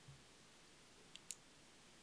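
Near silence: faint room tone, with two faint short clicks a little over a second in.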